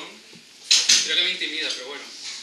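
A sudden loud clatter of hard objects knocking together, about two-thirds of a second in, with a second knock just after, then voices.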